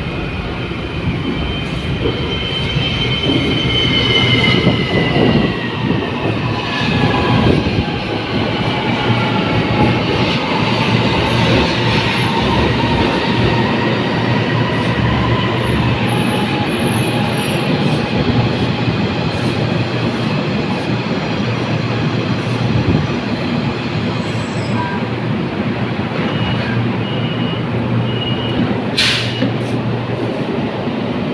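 rapidKL LRT train pulling into the platform: its whine falls steadily in pitch as it slows to a stop, over rolling wheel and rail noise. Near the end come a few short beeps at one pitch, the door chime, and then a short loud burst as the doors work.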